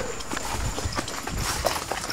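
Footsteps through grass: a run of uneven crunches and rustles.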